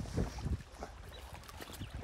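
Wind buffeting the microphone over small waves lapping against a rocky lake shore, with a few faint, irregular ticks.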